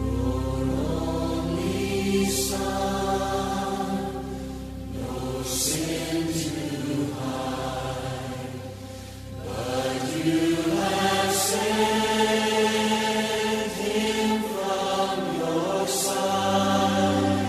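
Choral singing of a slow worship song, voices in chorus over instrumental backing, with long held notes.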